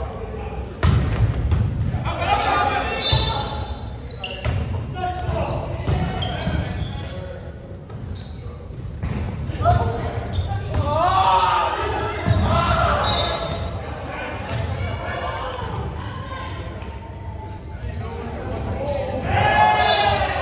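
Indoor volleyball being played in a large echoing gym: several sharp ball strikes and bounces, with players' voices calling and shouting in between.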